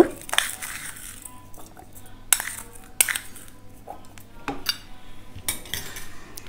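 Light clinks of steel kitchenware, a spoon and small steel ingredient bowls knocking together, about five separate strikes spaced roughly a second apart.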